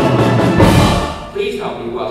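Symphony orchestra with choir holding a loud chord that ends in a single heavy percussion-and-orchestra hit about half a second in, which rings out and fades. A man's voice begins near the end.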